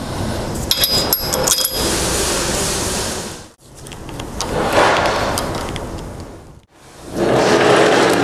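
Handling noise from fitting a corrugated plastic vacuum hose and its hose clamp: rubbing and scraping, with a cluster of small metallic clinks about a second in. The sound cuts out abruptly twice.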